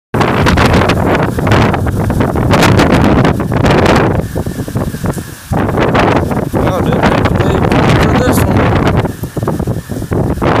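Storm wind gusting across the phone's microphone in uneven swells, over heavy rain falling during a severe thunderstorm, easing briefly about halfway through and again near the end.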